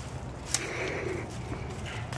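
Rustling of raspberry leaves and canes as a hand pushes in among them to pick berries, with one sharp snap or click about half a second in, over a steady low rumble.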